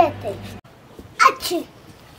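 A child's voice breaks off at the start, then about a second in a child sneezes once: a short rising breath and a sharp hissing burst.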